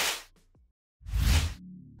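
Two whoosh transition sound effects: a short one at the start and a second, fuller one about a second in, with a gap of silence between them. Faint background music follows near the end.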